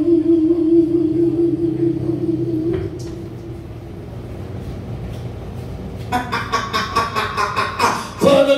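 Live band between songs: a long held note ends the number about three seconds in, followed by a low hum from the amplification. Near the end, quick, even rhythmic strokes start up as the next song begins.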